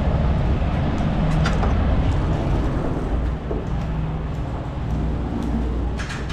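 Steady low rumble of running vehicle engines, with a few light knocks.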